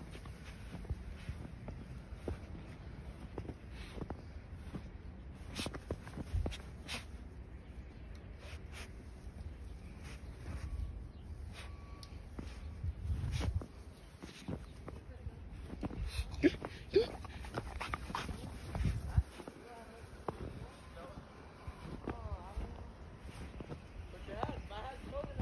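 A dog moving through deep snow: scattered crunches and scuffs, with a few short, wavering dog whines near the end.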